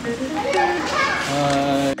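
Voices talking, including children's voices, over faint background music.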